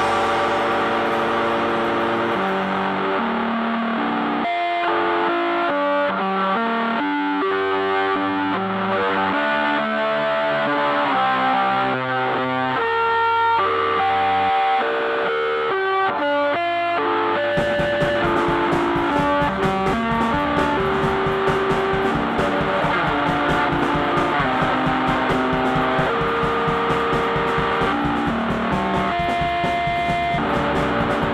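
Instrumental rock band music led by a distorted electric guitar playing a melodic line. The drums and bass drop away for a stretch, leaving the guitar notes exposed, then the full band with drums comes back in about seventeen seconds in.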